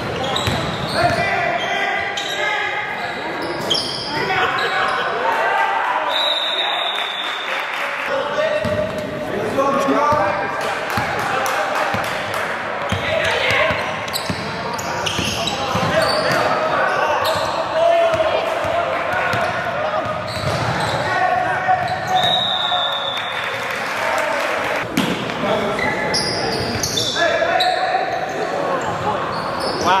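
A basketball being dribbled on a hardwood gym floor during a game, with indistinct shouts and chatter from players and spectators echoing in the hall. There are a couple of brief high sneaker squeaks.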